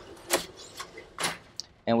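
Dell PowerEdge R620 1U server sliding back into the rack on its metal sliding rails, with two sharp metallic clicks, about a third of a second in and again just over a second in.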